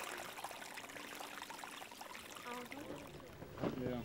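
Faint trickle of water seeping up through a levee boil into a ring of wet burlap sandbags, with faint voices in the background, a little louder near the end.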